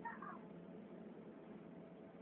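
A brief high-pitched animal call right at the start, lasting under half a second, over a faint steady background rumble.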